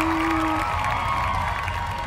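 A woman singing a dangdut-style love song unaccompanied, holding one long note that ends about half a second in. A pause with a steady low hum follows.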